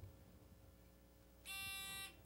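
Near silence, then about one and a half seconds in a quiz-show buzzer gives a steady electronic beep lasting about half a second: a contestant has buzzed in to answer.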